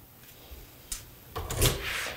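A click, then a short rattling clatter of a front door's deadbolt and lever handle being worked as the door is unlocked from inside.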